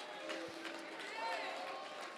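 Faint, scattered voices from the congregation responding, over soft held notes of church music.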